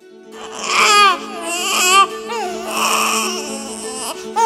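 A baby crying in a series of wavering wails, starting just after the opening, over background music with steady held notes.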